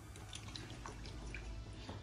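Faint, scattered light clicks and squelches of a fork breaking an egg yolk and starting to beat it with milk in a ceramic bowl.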